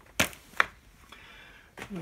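Plastic Blu-ray cases being handled: two sharp clicks less than half a second apart, then only faint handling noise.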